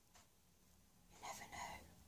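Near silence with room tone, broken about a second in by a brief, faint whisper from a woman, in two short parts.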